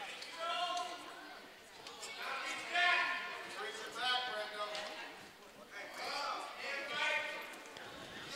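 Voices shouting and calling out in a school gym during a wrestling bout, about five separate calls a second or so apart.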